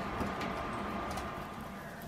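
Faint light clicks and rustling from guinea pigs moving in loose hay, over a quiet room hum.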